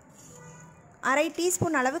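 A woman's voice speaking, starting about a second in after a near-quiet moment.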